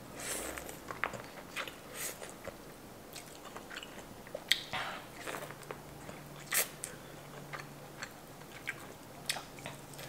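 Biting into a corn on the cob and chewing: kernels crunching and popping in irregular short clicks, with wet chewing between them. The sharpest crunches come about four and a half and six and a half seconds in.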